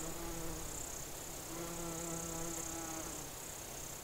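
A bee buzzing in two spells, breaking off for about a second between them, over a steady high hiss.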